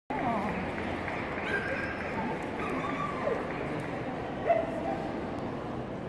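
Dogs whining and yipping over the talk of many people in a large sports hall, with one louder yip about four and a half seconds in.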